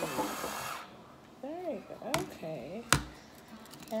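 Battery-powered electric wine opener's motor whirring briefly as it works the cork, cutting off under a second in. Two sharp clicks follow, about a second apart.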